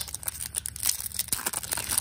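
Foil trading-card pack wrapper crinkling and tearing as it is pulled open by hand: a quick run of crackles and rips.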